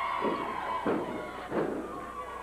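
Three heavy thuds of wrestlers' bodies slamming onto the ring canvas, a little over half a second apart, the last two the loudest, with the crowd shouting behind them.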